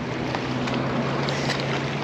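Steady outdoor noise of wind and water at the seawall, with a low steady hum underneath.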